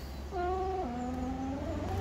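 Ford S-Max power tailgate's electric motor whining as the tailgate closes. The whine starts about a third of a second in and drops in pitch about midway.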